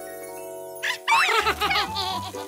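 Children's cartoon background music holding a steady chord. About a second in, high-pitched wordless cartoon character voices start squealing and chattering excitedly over it.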